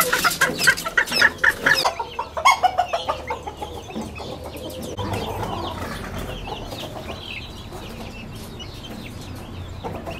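Ornamental chickens clucking, with a quick run of sharp taps through the first two seconds. After about five seconds the sound drops to quieter clucking with faint high peeps.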